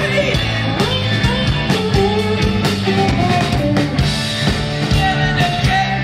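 Live rock band playing loudly: electric bass, guitar and drum kit, with a singer's voice over them.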